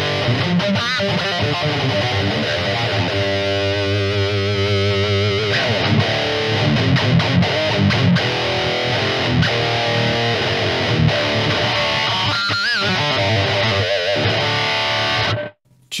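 High-gain distorted electric guitar played through a Neural Amp Modeler capture of a 5153 Red amp channel, boosted by an 808-style overdrive, in a metal-style lead and riff passage with held notes shaken by wide vibrato and a bend. The playing cuts off suddenly just before the end.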